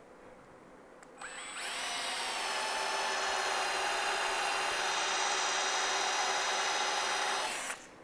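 Cordless drill driving a countersink bit into mahogany. Its whine rises as it spins up about a second in, then it runs steadily while cutting and stops just before the end.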